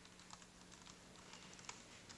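Near silence: room tone with faint scattered light clicks, one slightly louder near the end, over a faint steady low hum.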